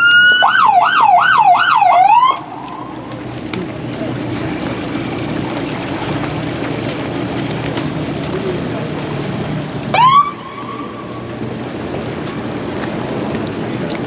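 Police boat siren: a rising wail that breaks into a fast up-and-down warble for about two seconds, then cuts off; near ten seconds in, one short rising whoop. A steady low engine hum runs underneath.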